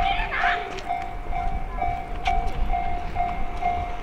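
Japanese railway level-crossing alarm ringing, one repeated electronic bell tone at about two strikes a second, with a low rumble underneath.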